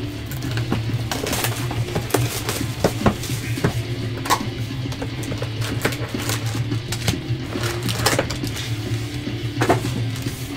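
Foil trading-card packs crinkling and clicking as they are lifted out of a hobby box and set down on a table, over background music.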